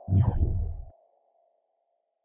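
Motion-graphics sound effects for an animated logo: a steady electronic tone slowly fading away, with a whoosh over a low rumble for just under a second at the start.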